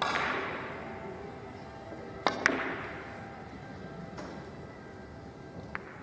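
A three-cushion carom billiards shot: the cue strikes the cue ball at the start, then two sharp clicks of balls colliding come in quick succession a little over two seconds in, with a faint click near the end.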